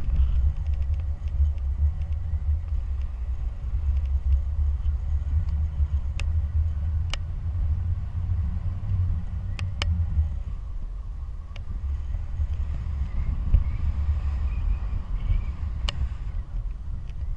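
Wind from the airflow of paraglider flight buffeting the camera microphone: a steady low rumble, with a few sharp clicks in the middle of the stretch.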